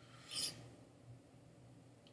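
Quiet room tone with one brief, soft hiss about half a second in.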